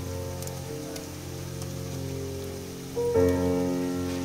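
Chopped onions and green chillies frying in oil in a pot, a steady sizzle. Background music with held notes plays over it, and a new, louder chord comes in about three seconds in.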